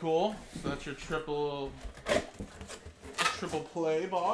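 A man's voice making a few short vocal sounds that are not clear words, with a few sharp knocks from cardboard card boxes being handled in between.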